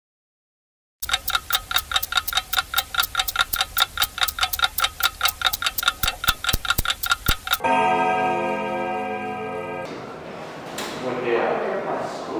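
Clock-ticking sound effect, fast and even at about six ticks a second, starting about a second in and breaking off into a ringing tone that fades over about two seconds. It marks a time-travel jump.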